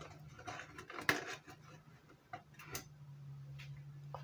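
Scattered light taps and crinkles of a thin plastic bottle as a whole mackerel is pushed down into it, the sharpest tap about a second in, over a steady low hum.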